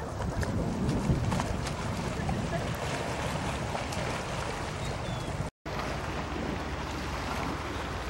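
Wind buffeting the microphone over small lake waves lapping against shoreline rocks, a steady rushing noise, broken by a brief dropout a little past halfway.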